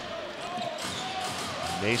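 Basketball game sound in an indoor arena: a steady murmur from the crowd with the ball being dribbled on the hardwood court.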